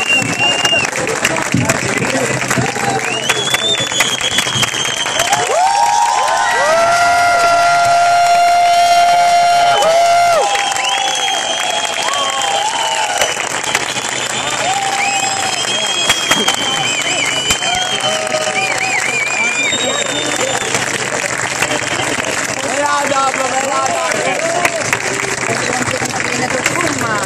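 A crowd clapping and cheering, many voices shouting over steady applause; the cheering swells loudest with long held cries for a few seconds about a quarter of the way in, then settles back to clapping and scattered shouts.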